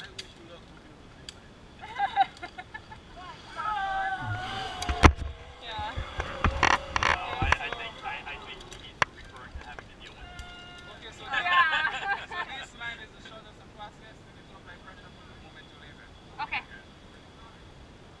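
People talking in short snatches, with a cluster of sharp knocks and clicks about five to seven seconds in.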